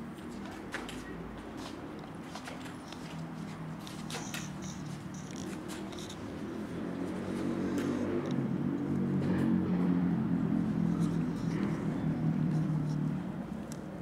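Indistinct low voices, louder in the second half and fading near the end, with a few faint clicks.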